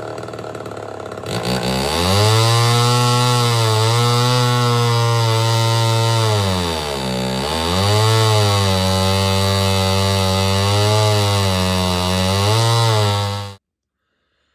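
Homelite Super XL Auto two-stroke chainsaw with an aftermarket reed cage, running rough at low speed, then revved up about a second and a half in and held at high speed. It sags hard once in the middle and slightly twice more before cutting off suddenly near the end. It sounds lean: the high-speed circuit is not getting enough fuel.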